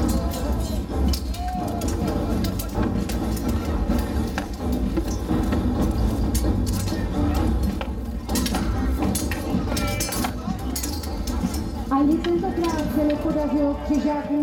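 Clattering and knocking of steel swords, polearms and armour in a close-quarters melee, with voices shouting over it; a man's voice rises up near the end.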